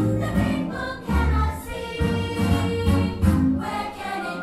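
A group of young children singing together in chorus over instrumental music with a steady bass beat.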